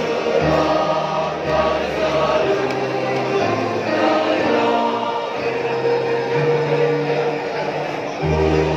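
Mixed SATB choir singing a slow song in long held chords.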